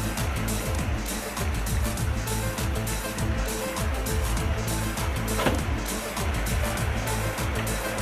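Background music, over a steady low engine-like hum from the running suction pump.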